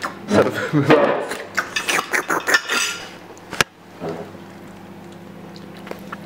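Cutlery clinking and scraping on plates as food is served at a table, busiest in the first half. A single sharp click a little past halfway, then only a steady low hum.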